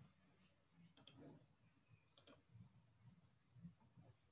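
Near silence with faint clicks in two close pairs, about one second and two and a quarter seconds in.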